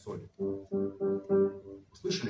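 Grand piano: about five soft, short notes on the same low G, doubled at the octave, repeated about three times a second.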